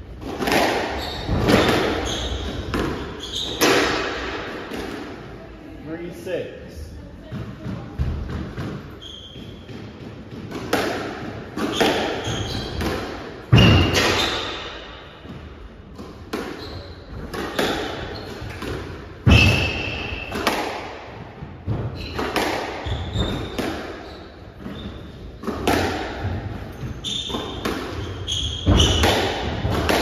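Squash rally: the ball cracking off rackets and the court walls in sharp, irregular hits every second or two, with players' footsteps and short high squeaks of shoes on the wooden court floor.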